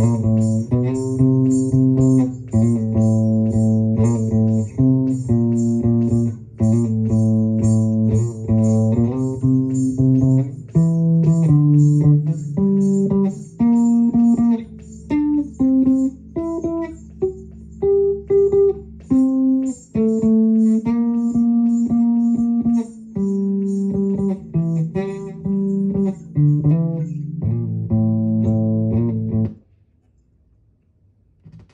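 Electric bass guitar playing a slow melodic line of held, plucked notes, with a light jingle of ankle bells keeping a steady beat. The playing stops abruptly at the end.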